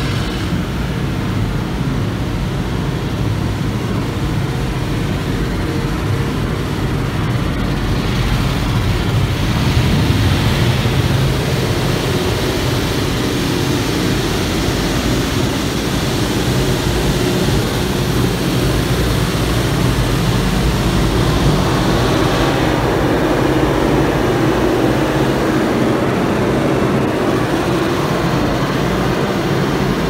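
Automatic car wash heard from inside the car's cabin: a loud, steady rumble of water spray and rotating brushes working over the windshield and body. The sound shifts in character about eight seconds in and again near twenty-three seconds.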